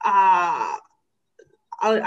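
Speech only: a woman's drawn-out syllable that falls in pitch, a pause of under a second, then her talking resumes near the end.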